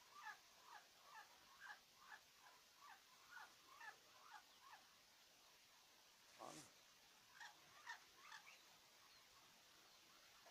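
Faint, repeated short chirps from a small bird chick, each falling in pitch, about two a second. A little past halfway there is one louder, longer sweep, and then a few more chirps.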